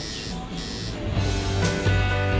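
An electric tattoo machine buzzes briefly, then background music starts about a second in.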